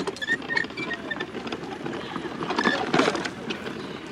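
Garden wagon loaded with pumpkins being pulled over rough grass and dirt, its wheels and tub rattling and clattering unevenly, loudest about three seconds in.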